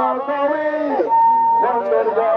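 A man's voice singing through a loudspeaker, with sliding notes and one long held note about halfway through.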